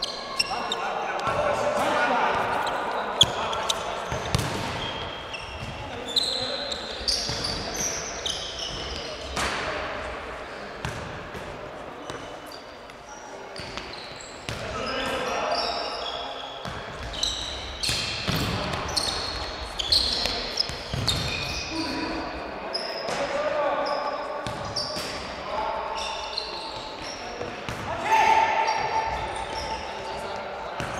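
Futsal being played in a sports hall: the ball being kicked and bouncing off the floor again and again, with short high squeaks and players' calls echoing in the hall.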